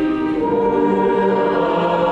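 A national anthem sung by a choir over orchestral accompaniment, held notes moving to a new chord about half a second in.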